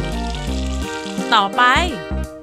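A cartoon sound effect of liquid paint pouring into a cup, playing over steady background music.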